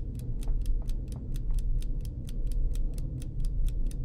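A ticking clock sound effect, sharp evenly spaced ticks at about four a second, building suspense, over a steady low rumble.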